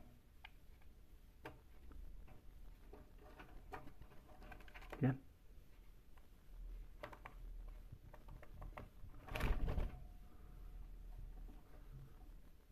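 Light scattered clicks and taps of a hand and a budgerigar's feet on a wire birdcage, with a brief louder sound about five seconds in and a short rustling burst near ten seconds.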